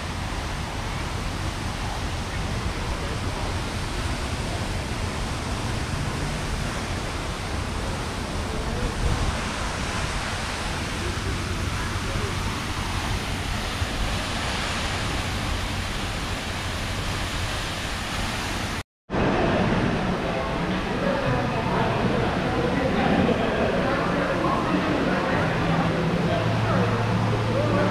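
Outdoor fountain's water jets splashing, a steady even hiss that cuts off suddenly about nineteen seconds in. After it, the chatter of many people in a large indoor hall.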